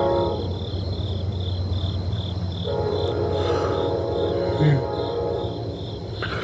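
Cricket chirping steadily, about three chirps a second, over a low steady hum. A long held tone of several notes fades out just after the start and sounds again from about three seconds in.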